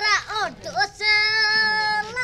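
A young boy singing: a few short sung syllables, then one long held note from about halfway through.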